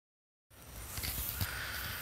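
Quiet outdoor background that starts about half a second in: soft footsteps in grass, a couple of faint knocks, and a low rumble.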